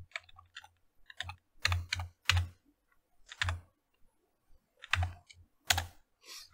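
Typing on a computer keyboard: irregular keystrokes, with about half a dozen louder strokes spread through, as a terminal command is typed and entered.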